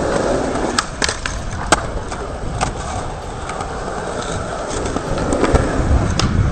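Skateboard wheels rolling on smooth pavement, a continuous rumble. Sharp clacks of the board popping and landing come several times in the first three seconds and again near the end.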